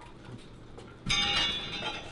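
Faint handling clicks from a bicycle, then about a second in a short, bright ringing tone that starts suddenly and fades away within a second.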